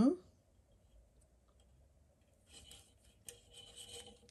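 Faint, irregular scratching and rubbing of a crochet hook pulling yarn through a stitch worked over a thin wire, heard in the second half.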